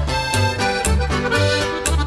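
Regional Mexican band music: an accordion playing a melody over bass notes on a steady beat, an instrumental fill between the sung verses of a birthday song.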